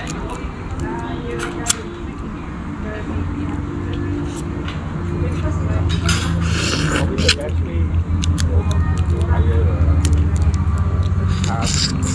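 Someone eating a crab by hand: the shell cracks and clicks, and there is a wet slurping burst about halfway through as the meat is sucked out. Behind it are voices and a low steady hum that grows louder from about halfway.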